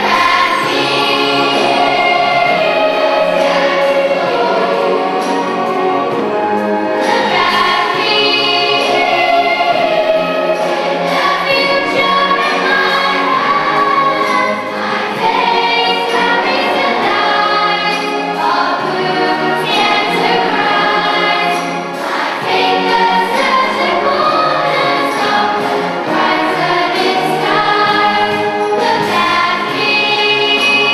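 A large massed choir of children and young people singing with a youth symphony orchestra of strings, woodwind, brass and percussion, the music continuous throughout.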